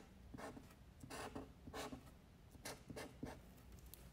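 Black marker pen drawing on paper in a series of short, faint strokes, about two or three a second, as it traces the outline of a letter.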